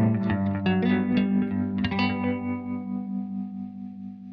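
Three-string cigar box guitar in GDG tuning, fingerpicked: a few plucked soul-style chord notes, then a last chord struck about two seconds in and left to ring and fade.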